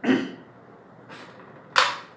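A single short, sharp click near the end, after a fainter brushing swish about a second in.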